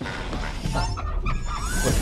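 Action-film trailer soundtrack: music over a deep, steady bass rumble, with a few rising sweeps near the end.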